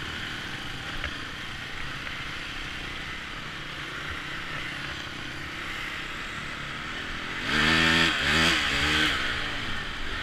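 Dirt bike engine running as the bike rides along a gravel track, heard from on the bike with a steady rush of engine and wind noise. About seven and a half seconds in, the engine is opened up and revs loudly, its pitch rising and falling a few times for a second and a half before settling back.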